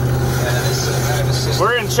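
Steady low drone of a car running, heard from inside the vehicle, with a voice speaking near the end.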